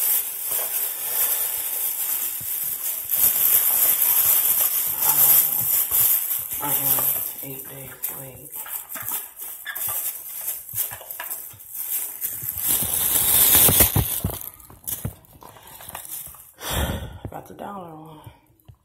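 Rustling and crinkling of packaging and a plastic bag close to a phone microphone, with scattered knocks as things are handled; loudest about thirteen seconds in.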